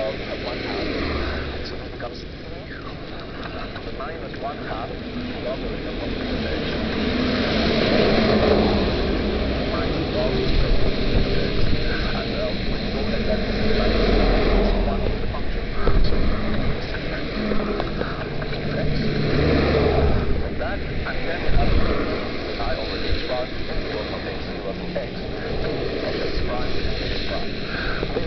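Wind rumbling on a moving microphone, mixed with the noise of traffic and tyres on a wet road; the rumble swells and eases in patches.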